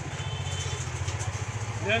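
A small engine idling steadily, a low even throb with a quick regular pulse.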